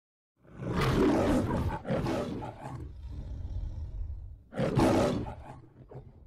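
The MGM lion's roar from the Metro-Goldwyn-Mayer studio logo: two loud roars back to back, a quieter low growl, then a third loud roar near the end.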